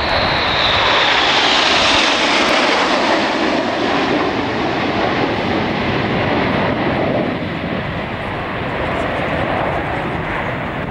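Jet noise of the Red Arrows' BAE Hawk T1 trainers passing overhead in formation, a whine falling in pitch over the first two seconds as they go by. The rush of engine noise stays loud, eases off about three-quarters of the way through and swells a little again near the end as the formation breaks.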